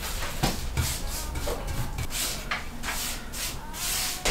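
Paintbrush strokes brushing chalk paint along a floor lamp's pole: a run of short rubbing swishes, about three a second.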